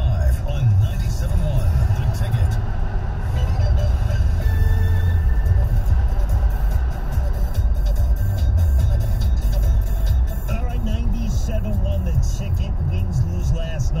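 Car radio playing a sports update: an announcer talking over background music. A steady low road and engine rumble runs underneath inside the moving car's cabin.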